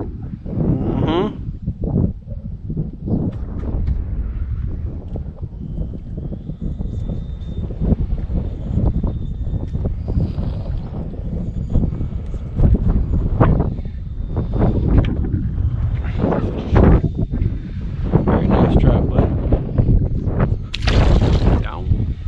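Wind buffeting the microphone as a steady low rumble, with indistinct voices breaking through now and then.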